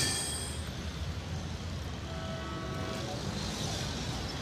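Steady city traffic noise, a low, even hum of passing vehicles, loudest at the start. A brief thin tone sounds for about a second, two to three seconds in.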